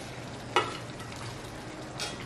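Paneer pieces sizzling in a pan of curry gravy, with one sharp clink of a utensil against the pan about half a second in.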